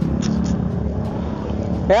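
Motorcycle engine running steadily at low speed as the bike rolls slowly.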